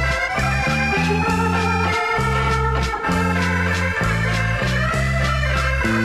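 Instrumental waltz from a 1970s record: a sustained electronic organ melody over a bass line of short repeated low notes.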